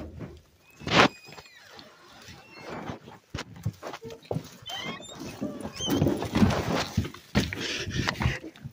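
An animal giving several short, high squeals amid rustling and handling noise, with a loud knock about a second in.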